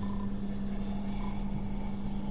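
Steady low hum of the room and recording setup, one constant tone with faint background noise.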